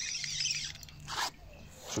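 Faint raspy whirr of a fishing reel being wound in while a hooked fish is played on the line, with a short rustle about a second in.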